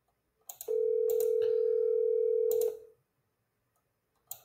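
Telephone ringback tone from a smartphone on speakerphone: one steady two-second ring, the sign that the outgoing call is ringing and not yet answered. A few short clicks sound around it.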